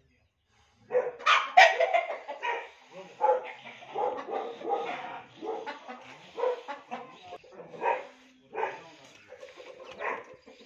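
Animal calls after about a second of silence: a dense run of loud, repeated calls, each roughly half a second to a second apart, the loudest coming near the start.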